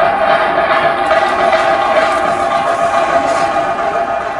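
Live music of a theyyam ritual: steady held tones over a dense, busy din of crowd noise.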